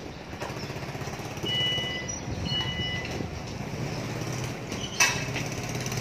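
A car engine idling with a steady low rumble, with two short electronic beeps a second apart near the middle and a sharp thump about five seconds in.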